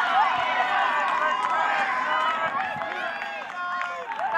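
Many high-pitched voices shouting and cheering at once from softball players and spectators, overlapping so no words come through. Loudest at the start, easing off toward the end.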